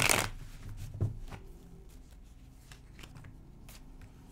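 A deck of tarot cards being shuffled by hand: a loud rush of riffling cards right at the start, then soft scattered clicks and slides of cards for the rest.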